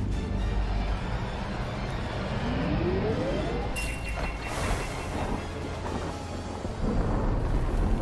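Action-scene soundtrack from an animated series: dramatic music over a deep rumble, with a rising sweep and then a sudden blast about halfway through, and booms growing louder near the end.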